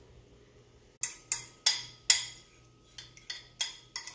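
A metal utensil clinking and scraping against a ceramic bowl and a stainless steel mixing bowl, knocking out the last of the shredded cheese. There are about seven sharp, ringing clinks in two groups, starting about a second in.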